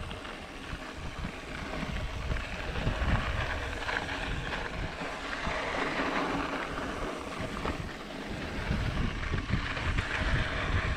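Mountain bike descending a dry dirt singletrack: wind rushing over the microphone and the tyres rolling over the dirt, with small knocks from bumps along the way.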